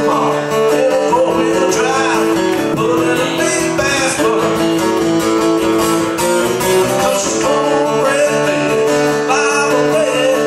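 A live solo country song: steel-string acoustic guitar strummed and picked at a steady pace, with a man singing in a few short phrases.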